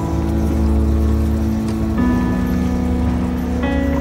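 Background music of held chords that change about every two seconds, over a steady low rumble.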